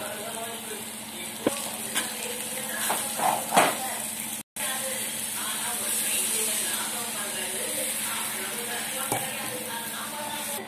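Onions and spices sizzling in a hot aluminium pan, with a metal spatula knocking and scraping against the pan several times. After a sudden cut, steady sizzling as water is poured over chopped okra in the pan.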